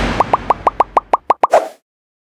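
Animated end-screen sound effects: a whoosh fading out, then a quick run of about nine short rising pops, roughly seven a second, ending in a brighter burst that cuts off suddenly.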